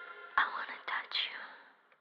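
The last held notes of a recorded song fade away while soft, breathy, whisper-like sounds come and go, the loudest about half a second in.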